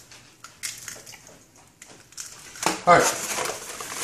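Eggs being cracked by hand into a plastic measuring pitcher: a series of faint cracks and taps of shell.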